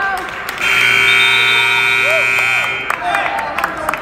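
Gym scoreboard buzzer sounding one steady, harsh tone for about two seconds, starting under a second in and cutting off: the horn marking the end of the wrestling bout. Crowd voices are heard around it.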